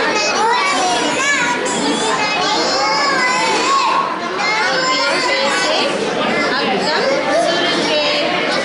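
Young children talking and chattering over one another, with high-pitched kids' voices continuing throughout.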